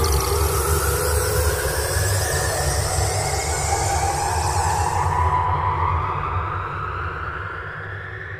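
Cinematic logo-intro sound effect: a deep rumble under a long whoosh with slowly rising sweeping tones. The high hiss drops away about five and a half seconds in and the whole sound fades out near the end.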